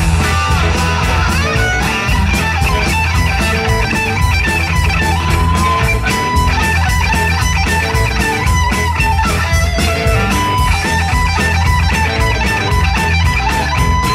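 Live rock band playing: electric guitars over bass guitar and drums keeping a steady beat.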